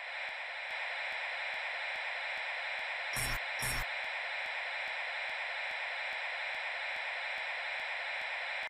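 Steady radio-style static hiss with a faint regular ticking about three times a second. A little past three seconds in come two short, louder bursts of crackling interference, about half a second apart.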